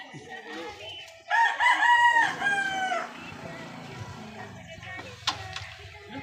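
A rooster crowing once, starting about a second in: one drawn-out call that drops in pitch at its end. A single sharp click comes near the end.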